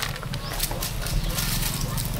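Light rustling and clicking of pounded coffee beans being scooped by hand out of a wooden mortar, over a steady low rumble.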